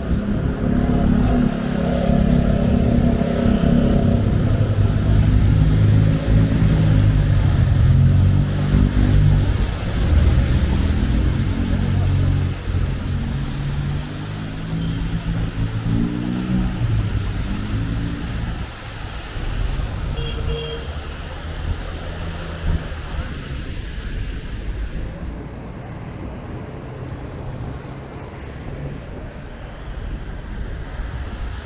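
Traffic on a rain-wet city road: a heavy vehicle's engine runs loudly for the first half, its pitch climbing in steps as it pulls away. After that comes a quieter, steady hiss of rain and tyres on wet pavement.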